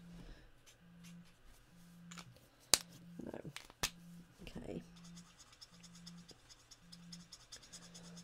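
A nearly dry Stampin' Blends alcohol marker rubbed over cardstock in quick strokes, making a faint scratchy sound that shows the marker is running out of ink. The scratching is clearest in the second half, and there are a couple of sharp clicks near the middle.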